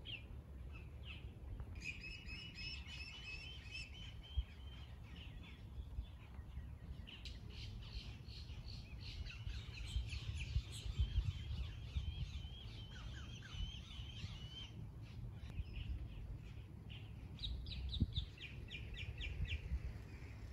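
Birds singing in several bouts of quick, repeated chirps, over a low steady rumble.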